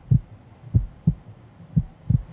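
Heartbeat sound effect: low double thumps, lub-dub, repeating about once a second over a faint hum, used as a suspense cue during a countdown.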